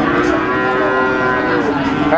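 A cow mooing in one long, drawn-out call whose pitch dips slightly near the end.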